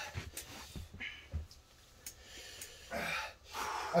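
A man breathing hard through the mouth: a few short, gasping breaths, then a longer breath about three seconds in. He is reacting to the capsaicin burn of a 13-million-Scoville chocolate bar.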